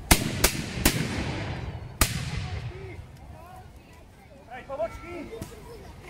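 A volley of black-powder muskets fired by musketeers: three shots in quick succession in the first second, then a fourth about two seconds in, each with a short echoing tail.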